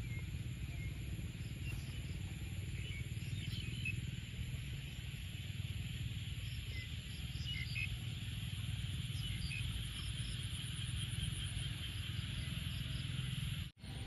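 Evening chorus of crickets and other insects after rain: a steady high trill with a faster, finely pulsing trill above it. A steady low rumble runs underneath, and the sound breaks off for an instant near the end.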